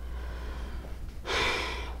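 A person's audible breath, a short breathy rush lasting about 0.7 s, starting just past halfway through, over a steady low electrical hum.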